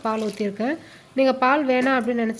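A woman speaking, with a brief pause about a second in.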